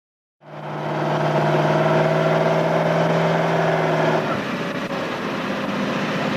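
GAZ-66 four-wheel-drive truck with a passenger body, its V8 engine running with a steady hum that fades in. About four seconds in, the engine note drops and goes a little quieter.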